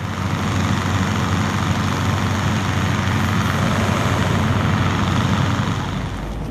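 Hot-air balloon propane burner firing: a loud, steady roar with a low drone underneath, dropping away near the end.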